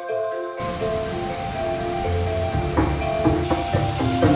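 Light melodic background music. From about half a second in, the steady rush of water from a small garden waterfall and stream sits under it, growing stronger near the end.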